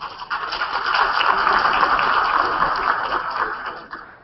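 Audience applauding in a hall. The clapping swells in just after the start, holds steady, and fades away near the end.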